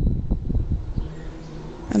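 Wind buffeting the microphone: a low, uneven rumble with irregular thumps. A steady low hum comes in about halfway through.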